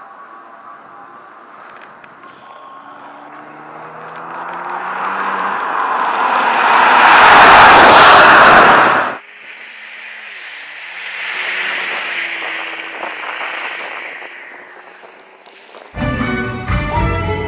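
Porsche 911 (996) Turbo Cabriolet's 3.6-litre twin-turbo flat-six passing close by at speed: the engine note climbs in pitch and grows to its loudest about 7 to 8 seconds in, then cuts off suddenly. A second, quieter car pass swells up around 12 seconds and fades away.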